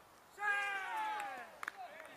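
A high, voice-like cry that falls in pitch over about a second, followed by a short sharp click.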